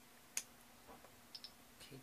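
A single sharp click about a third of a second in, then two faint quick clicks close together about a second later, in a quiet room.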